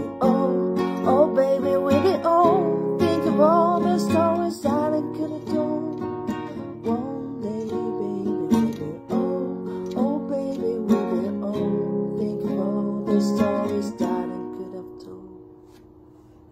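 Acoustic guitar strumming chords steadily, with a wordless voice wavering over the first few seconds. Near the end the strumming stops and the last chord fades out.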